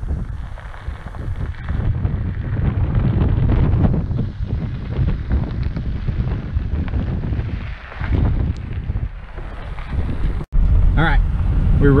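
Wind gusting on the microphone, a rumbling noise that rises and falls. Near the end it cuts abruptly to the inside of a car driving on a dirt road, with steady engine and road noise.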